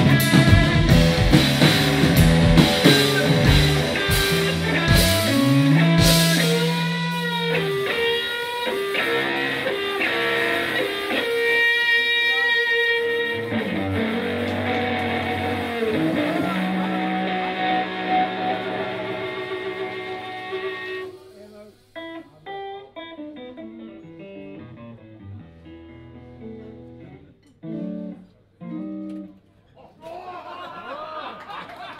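Live electric guitar, bass and drums trio playing a blues-rock instrumental. The drum strokes stop about six seconds in, and the guitar carries on with bent, ringing notes that grow quieter, thinning to sparse soft notes in the last third as the tune winds down.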